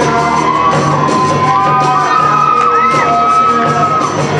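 Amateur rock band playing live on electric guitars, bass and drum kit, loud and steady, with no vocals. A long held high note, bending slightly, rings over the band from about a second and a half in.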